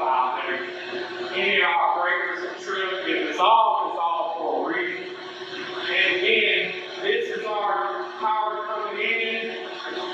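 A man talking indistinctly over a steady machinery hum in an equipment room.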